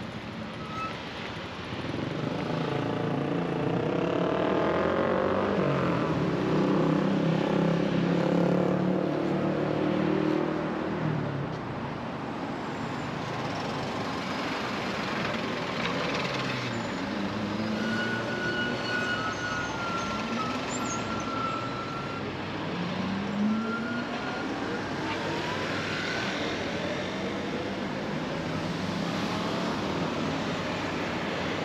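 Road traffic at a busy intersection: trucks and cars pulling away and passing close, their engines rising in pitch as they accelerate. The loudest is a heavy vehicle passing in the first ten seconds. A thin, high whine comes and goes around the middle.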